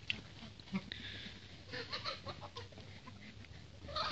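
Faint farmyard poultry giving a few short, scattered calls.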